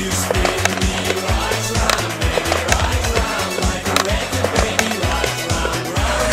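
Skateboard wheels rolling on concrete with repeated clacks and slaps of the board, over music with a heavy, repeating bass line.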